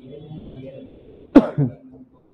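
A man coughs twice in quick succession, a sharp loud cough about one and a half seconds in and a shorter one right after it.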